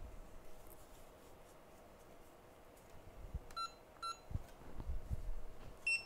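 Electronic bench equipment beeping: two short beeps about half a second apart past the middle, and one more near the end. Soft knocks of handling on the workbench come in between.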